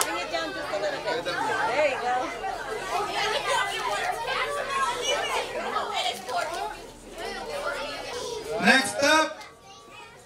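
Many overlapping voices chatting in a large room, children's voices among them. Near the end one louder voice speaks briefly.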